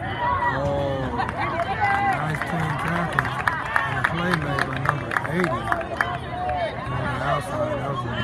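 Many overlapping voices of sideline players and spectators talking and calling out, with no single speaker standing out. A quick series of sharp clicks comes about three seconds in and lasts a couple of seconds.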